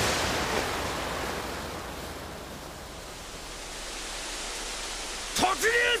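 A rushing, wind-like noise that fades over the first few seconds, then holds low and steady.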